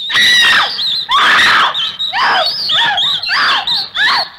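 A woman screaming, a run of about six shrill screams in quick succession.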